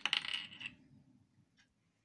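A red plastic glue stick being handled: a sharp click right at the start, then a brief light rattle of hard plastic for about half a second that dies away.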